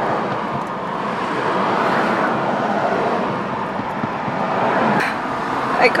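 Steady rush of road noise heard inside a moving car's cabin.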